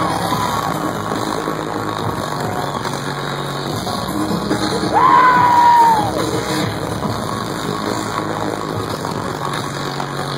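Loud live electronic bass music over a concert sound system, with crowd noise. About five seconds in, a person near the microphone lets out a long yell that rises and then falls in pitch and stands out over the music for about a second.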